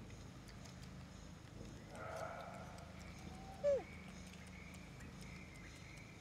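A macaque gives a short, sharp squeak that falls in pitch, a little past halfway, the loudest sound here; a rougher, brief call comes about two seconds in, over a faint steady background hum.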